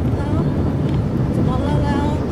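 Steady road and engine noise inside a moving vehicle's cabin, with a few brief voice-like sounds over it.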